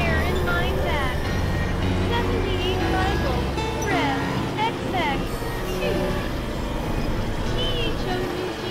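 Experimental electronic synthesizer music: many short sliding tones that chirp up and down in pitch over a low steady drone, which thins out about halfway through.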